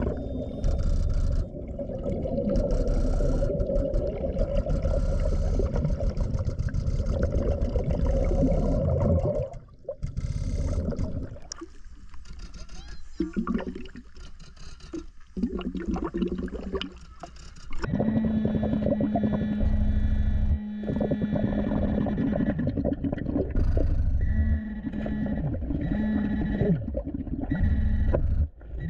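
Underwater camera sound of a scuba diver working the bottom: heavy rumbling of regulator breathing and exhaled bubbles, with a steady low hum through the last part broken by surges of bubbles about every four seconds.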